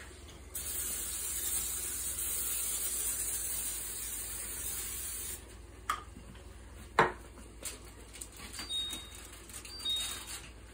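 Aerosol cooking spray hissing steadily for about five seconds as it coats a pan. A few short knocks follow, the sharpest about seven seconds in.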